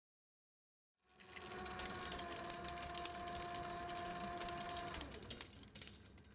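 Digital silence for a second, then a reel spinning fast on a winding machine: a steady motor whine with dense rattling clicks. The whine cuts off about five seconds in, leaving a looser clicking as the reel runs down.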